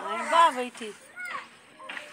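Indistinct talking: a person's voice, quieter than the speech around it, with a short rising squeak about a second in.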